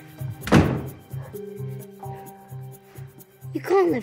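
A bedroom door shutting with a single loud thunk about half a second in, over background music with a steady pulsing beat. A voice starts near the end.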